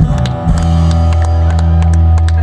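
Live rock band playing an instrumental stretch between sung lines: held bass notes and guitar chords under steady drum and cymbal hits, with a new bass note coming in about half a second in.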